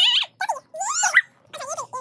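A child's high-pitched squealing voice: four short cries in quick succession that swoop up and down in pitch.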